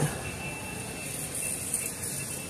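Steady background noise of a large store, an even hum and hiss with a faint high steady tone running through it.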